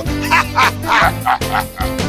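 A puppet monster's laugh in about half a dozen short, choppy bursts, over the show's theme music.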